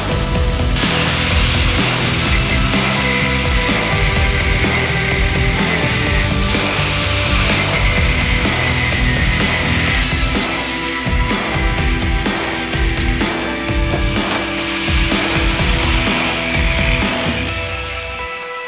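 Angle grinder with a cut-off disc cutting through metal, a steady grinding hiss that starts about a second in and eases near the end, with background music underneath.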